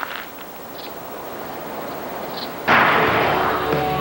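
Commercial soundtrack: a steady soft hiss of ambience, then nearly three seconds in a sudden loud burst of noise like a whoosh or blast, after which music with long held notes comes in.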